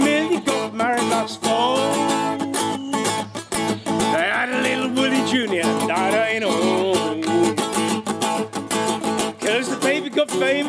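Acoustic guitar strummed in a steady, upbeat rhythm, with a man singing along.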